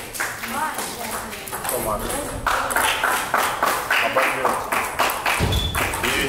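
Table tennis rally: a celluloid/plastic ball clicking sharply against rubber paddles and the table in quick succession, with people talking in the hall.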